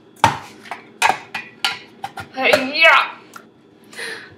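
Plastic hand-pressed plunger food chopper clacking as its blades are pushed down onto a half potato, a few sharp knocks, splitting the potato.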